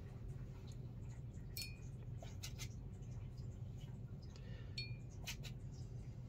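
A steady low hum with a few light clicks, and two brief small clinks that ring for a moment, about one and a half and nearly five seconds in.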